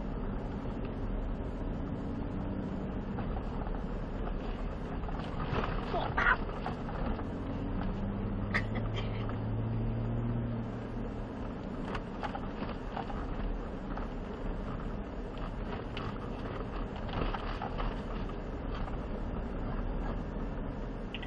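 Cabin sound of a Ford Raptor pickup driving slowly over a rough dirt trail: a steady low engine and tire drone with scattered small knocks and rattles from the uneven ground.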